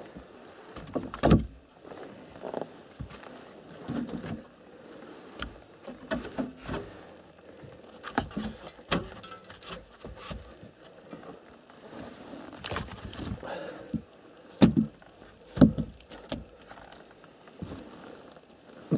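Split firewood logs being handled and stacked by hand: irregular wooden knocks and clatter, with one loud knock about a second in and two more near the end.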